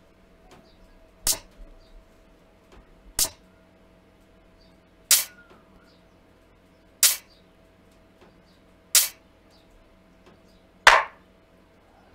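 Six short, crisp percussion hits, one about every two seconds, from a looping FL Studio step-sequencer pattern: first a shaker sample, then a hi-hat sample about halfway through. A faint steady hum runs underneath.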